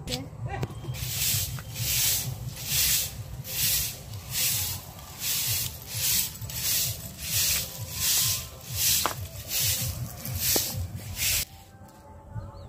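A stiff stick broom of thin stalks sweeping grit and dust across a concrete roof: repeated scratchy swishes, about one and a half strokes a second, starting about a second in and stopping shortly before the end.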